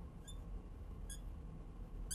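A marker squeaking on a lightboard's glass as a wavy line is drawn, in three short high-pitched squeaks about a second apart.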